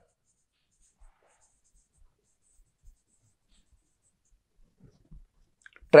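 Marker pen writing on a whiteboard: faint, scattered short strokes and taps.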